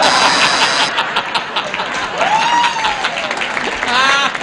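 Studio audience laughing and applauding, with a dense patter of clapping throughout and one rising-and-falling cry about halfway through.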